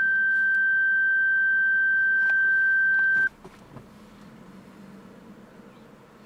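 Lexus IS 250's in-cabin electronic warning tone: one steady, high-pitched beep held for about three seconds, then cut off sharply, sounding with reverse selected and the reversing camera on. After it there is only faint cabin room tone with a few light clicks.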